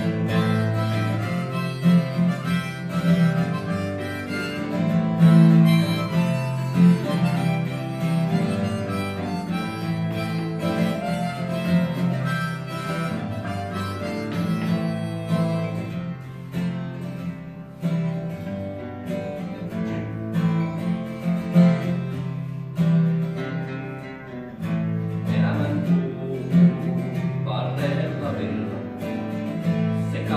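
Steel-string acoustic guitar strummed steadily while a harmonica in a neck rack plays a melody over it, in a folk-style instrumental passage.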